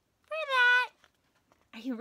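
A single high, meow-like call lasting about half a second, its pitch dipping at the end. A woman's voice starts just before the end.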